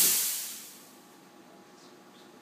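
Compressed air hissing out of the air-bearing spindle's just-cut supply line, fading away over about a second as the pressure bleeds off.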